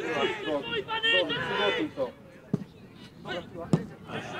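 Players' voices calling out across the pitch, then two sharp thuds of a football being kicked, a little over a second apart.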